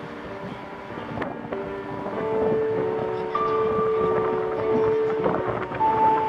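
Outdoor street ambience: wind on the microphone over road traffic, growing louder, with a few steady held tones in the background.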